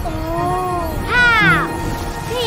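A cartoon puppy vocalising over background music: a long, wavering whine, then a higher yelp that falls sharply in pitch about a second in.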